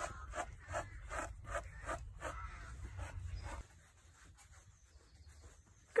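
Brisk, rhythmic strokes of a grooming brush over a pony's coat, about three a second, over a low rumble. The strokes stop about three and a half seconds in, leaving near quiet.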